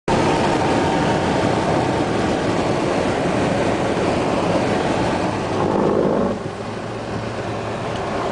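Mercedes car's engine and tyre and road noise heard from inside the cabin while driving fast on a track, a loud steady roar that drops in level about six seconds in.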